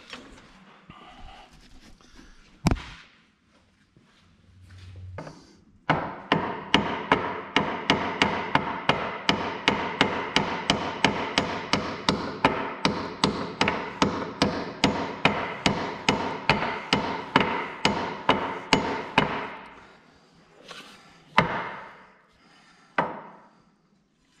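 Hammer blows on steel, driving the clamp bolt out of a tractor's steering arm: a few single blows, then a long, even run of ringing metal-on-metal strikes, about four a second, that stops with a few more single blows near the end. The bolt drives out hard because the arm has jumped on the shaft splines and the bolt no longer lines up with its notch.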